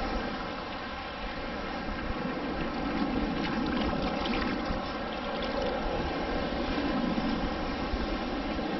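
Shallow seawater sloshing and swirling around wading legs while a long-handled titanium sand scoop is dug and lifted through the water, with a few brief splashy rattles about three to four seconds in.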